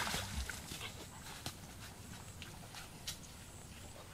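Splashing of someone wading through shallow muddy water, dying away over the first second, then quiet outdoor background with a few faint scattered ticks.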